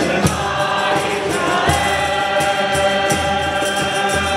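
A congregation singing a hymn together with a male lead singer, accompanied by strummed acoustic guitars. Regular sharp strokes keep a steady beat under the voices.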